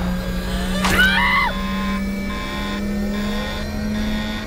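Cartoon spaceship sound effects: a steady engine hum with a whine rising slowly in pitch. About a second in there is a sudden whoosh, then a short squeal from Scrat. After that an electronic beep repeats about every 0.7 s.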